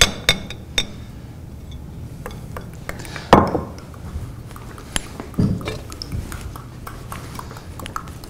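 A spoon stirring a thick yogurt sauce in a small ceramic ramekin, with scattered light clinks against the dish and one louder knock about three seconds in.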